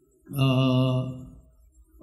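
A man's drawn-out hesitation sound, a single held "ehh" at a steady pitch for about a second that fades away.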